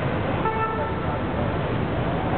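Steady road-traffic rumble, with a short car-horn toot about half a second in.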